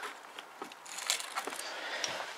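Faint handling noise: quiet at first, then a few soft rustles and light clicks from about halfway through.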